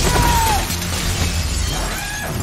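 Glass shattering, with shards showering and scattering, as a body crashes through a glass-topped table. Dramatic film score plays low underneath.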